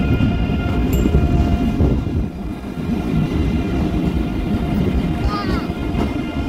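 ICE high-speed train running past on the track: a dense, uneven low rumble of wheels and running gear, with a few short high squeaks near the end.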